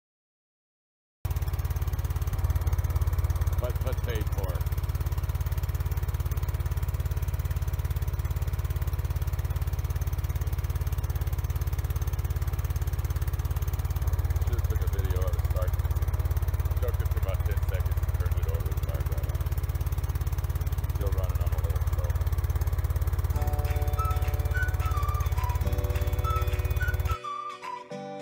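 A loud, steady low rumble with a fast, even pulse starts about a second in and holds level throughout, with a muffled voice now and then. Music comes in near the end.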